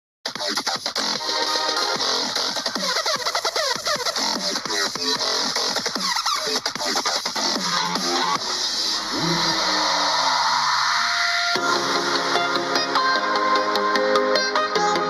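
Electronic dance music playing from a small F&D W5 Bluetooth speaker, picked up by the camera microphone in the room. It starts just after a brief silence, and about eleven and a half seconds in it switches abruptly to a section of plucked, melodic notes.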